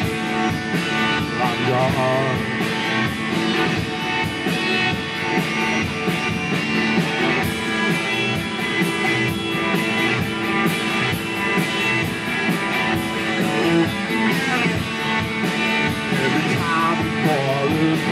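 Live rock band playing: electric guitars over a drum kit, continuous with a steady beat.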